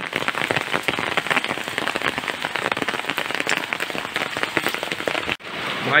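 Heavy rain falling on a flat concrete rooftop where water is standing: a dense, steady patter of drops. The sound breaks off abruptly for a moment near the end.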